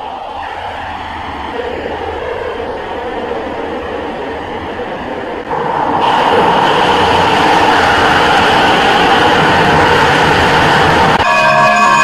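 Heavily effects-processed logo soundtrack: a dense, rushing, noisy sound without clear pitch that jumps louder about halfway through, then sustained synthetic chord tones return just before the end.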